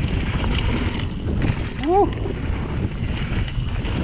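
Heavy wind buffeting on the camera microphone of a mountain bike riding down a dirt trail, with scattered sharp clicks and rattles from the bike over the ground. A rider calls a short "woo" about two seconds in.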